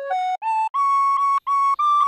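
A recorder playing a melody in separately tongued notes: a quick climb of about an octave from a low note, then the high note repeated four times.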